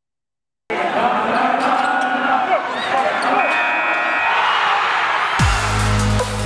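Podcast intro sound: an arena crowd cheering, mixed with sharp knocks, starts suddenly after a moment of silence. About five seconds in, a deep electronic bass drop with a falling pitch glide begins the intro music.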